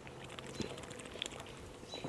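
Faint sips and swallows of someone drinking from an aluminium drink can, with a few small clicks.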